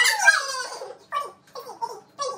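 A woman's loud, high squeal that falls in pitch over about half a second, followed by a few short vocal bursts.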